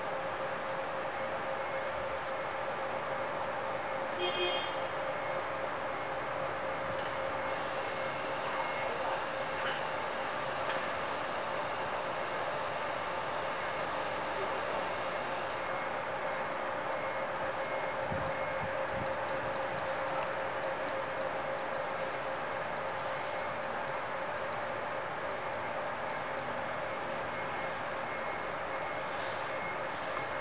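A steady mechanical hum holding one constant pitch, with a brief high tone about four seconds in and faint ticking later on.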